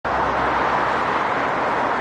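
Steady road traffic noise: an even hiss of passing cars over a low rumble.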